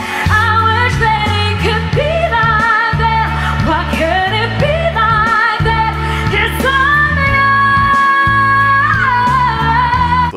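A female pop singer performing live into a microphone over instrumental backing, her voice wavering with vibrato and sliding up into notes, then holding one long note from about seven seconds in until nearly the end.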